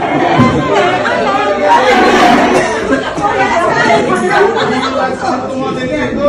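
Several people talking over one another in a room: overlapping party chatter.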